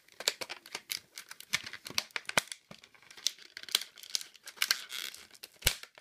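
Clear plastic blister packaging being pulled and peeled off its cardboard backing, crinkling and cracking in quick, irregular snaps, with one louder crack near the end.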